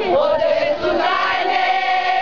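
A small group of women singing together into a microphone, loud, with long held notes.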